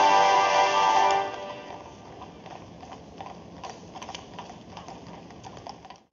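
Band music playing loudly stops about a second in, leaving the irregular clip-clop of carriage horses' hooves.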